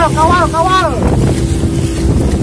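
Motor of a wooden outrigger boat running steadily under way, a constant low drone, with wind buffeting the microphone. A voice calls out in the first second.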